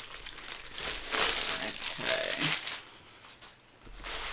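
Clear plastic sleeve crinkling as a rolled diamond painting canvas is slid out of it and unrolled. The crinkling comes in several bursts, then dies down near the end.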